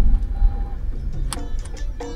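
Low, steady rumble of a car cabin while driving. About a second and a half in, percussive background music with hand-drum strikes comes in over it.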